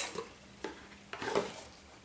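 Cardboard eyeshadow palettes being handled and lifted out of their cardboard box: a few light taps and rustles, the loudest about a second and a half in.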